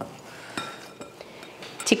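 Hands kneading a soft chicken dough in a glass bowl: faint soft knocks and a few light clinks against the glass, one with a brief ring about half a second in.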